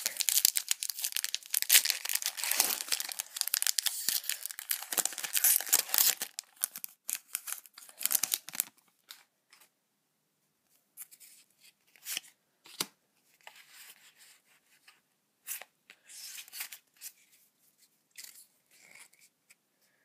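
Foil Pokémon trading card booster pack being torn open, a dense crackling tear and crinkle for about six seconds. After that come quieter, scattered flicks and rustles as the cards are handled.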